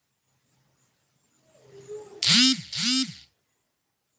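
A voice making two short calls, each rising and then falling in pitch, about half a second apart, after a fainter falling whine.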